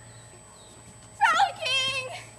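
A girl's high-pitched wordless vocalising: after a quiet second, a loud swooping, wavering squeal, then a held sung note.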